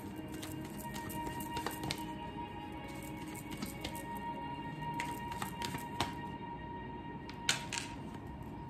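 Soft, steady background music, with the light clicks and snaps of a deck of cards being shuffled by hand; the sharpest snaps come about six seconds in and again near the end.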